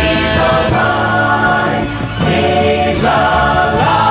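Gospel vocal group singing in harmony as a choir, with a short break between phrases about two seconds in.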